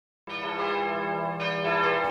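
Bell-like intro chime: a held chord of ringing tones that starts just after a moment of silence, with brighter upper notes joining about one and a half seconds in.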